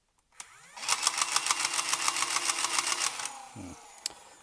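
A Nerf Stryfe's motors spin up with a rising whine, then the auto-pusher's 130-motor gearbox runs with a fast clatter of about ten clicks a second before winding down near the end. The pusher gearbox's alignment is a little off.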